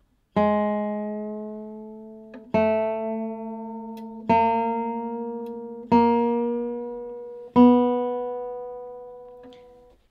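Open B (second) string of a nylon-string classical guitar plucked five times, each note ringing out and fading, while it is tuned up to pitch: slightly flat at first, in tune by the last pluck.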